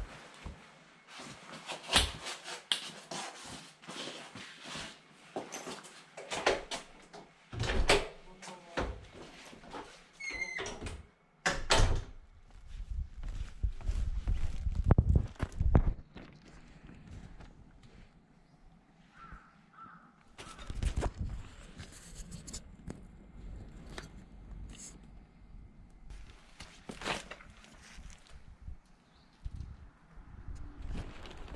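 A front door and other things in the entryway knocking and clattering again and again, with a stretch of low rumbling noise about twelve seconds in that is the loudest part.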